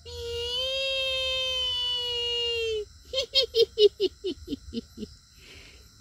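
A high-pitched voice holds one long, slightly wavering note for nearly three seconds. After a short pause it breaks into a quick giggling laugh of about ten short notes, each dropping in pitch.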